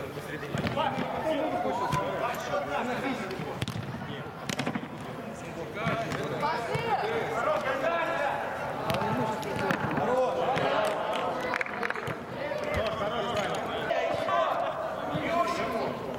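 Indistinct men's voices calling out during a five-a-side football game, with scattered sharp thuds of a football being kicked and bouncing on artificial turf inside an air-supported dome.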